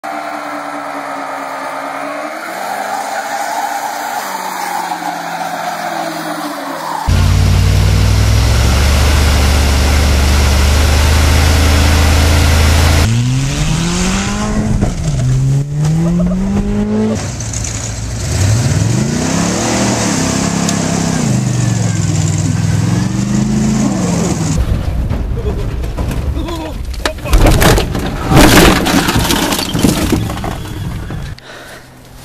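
A run of car clips: a big Cadillac V8 revving during a burnout, then a loud steady engine stretch, then engines revving up and down again and again, and near the end a rapid series of sharp crashing impacts.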